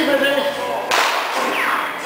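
A single sharp crack about a second in, followed by a falling whistle-like tone, with an amplified voice before the crack.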